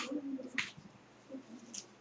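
Computer keyboard keys pressed: three sharp clicks, the first the loudest, then one about half a second later and another about a second after that, with faint short low tones in between.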